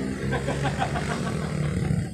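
A vehicle engine running with a steady low hum.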